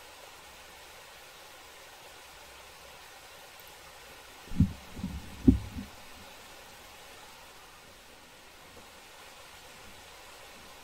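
Faint steady hiss, broken about halfway through by a quick cluster of four low, dull thumps within about a second: handling bumps on the microphone as the person leans in toward the computer.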